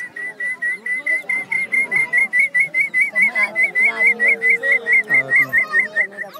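A man whistling through his cupped hand in imitation of a small quail's call: a rapid, even run of short high whistled notes, about six a second. It is the kind of call the community's hunters mimic while hunting birds.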